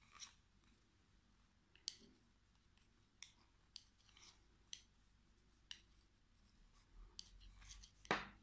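Faint, irregular clicks and taps of thick knitting needles, roughly one a second, as stitches are purled two together.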